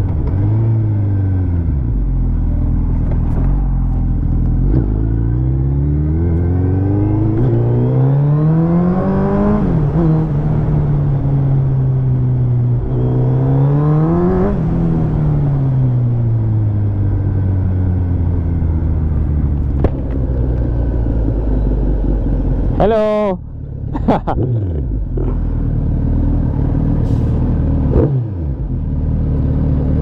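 Suzuki Hayabusa's inline-four engine under way, revving up in pitch twice, about a third and half of the way in, and dropping back as the throttle is rolled off. After that it runs on more evenly, with a brief wavering sound and a dip in level past the middle.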